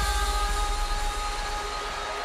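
The last chord of a pop song, held synth tones over a low bass, fading out while a studio audience cheers and claps.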